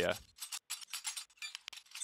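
Muted shaker sample playing solo in a fast, even run of short, bright, dry hits, passing through the Soothe2 resonance suppressor that is taming its harshness.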